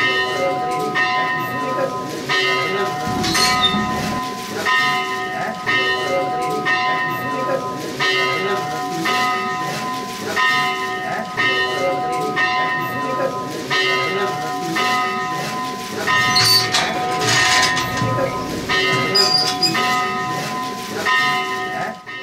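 Hindu temple bell rung over and over, about three strokes every two seconds, its tones ringing on between strokes.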